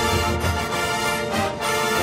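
A high school marching band's brass and winds playing full, held chords over a low bass, with a brief dip about one and a half seconds in.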